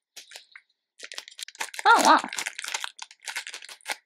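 Plastic snack packet crinkling and tearing as it is ripped open by hand, a dense run of crackles that goes on for about three seconds.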